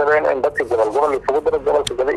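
Speech only: a man talking in Somali, with no other sound standing out.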